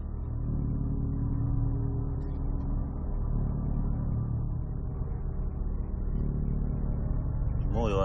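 Film trailer soundtrack: a low, steady droning rumble whose held tones shift twice, with a voice starting to speak at the very end.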